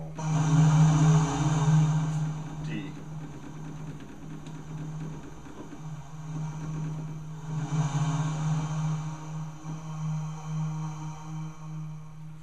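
Alesis QS8 synthesizer playing its 'Sunsrizer' preset: a held low note drones steadily, with a swell of hissing noise at the start and another about eight seconds in.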